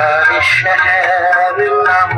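A man singing a held, wavering note over harmonium accompaniment.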